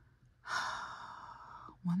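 A woman's long breathy sigh, lasting about a second, followed near the end by the start of spoken words.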